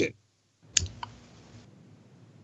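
A sharp click a little before halfway, then a softer click just after, over a faint hiss that cuts off suddenly.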